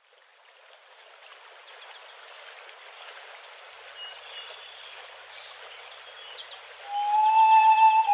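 Recorded nature ambience of running water fades in slowly, with a few faint short chirps. About seven seconds in, a pan flute enters loudly with a long held note that wavers slightly, opening the next track.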